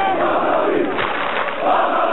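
Large crowd of football fans shouting and chanting together, with a loud collective shout rising near the end.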